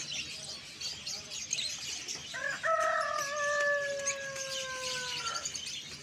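Many small cage birds chirping, with a rooster crowing once in the middle: one long call of about three seconds that sinks slowly in pitch toward its end.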